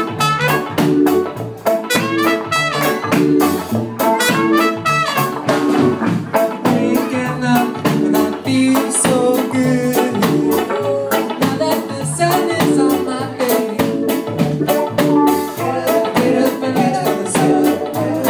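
Live reggae-ska band playing an instrumental: trumpet over electric guitars, keyboard, bass and drums, with a steady, even beat.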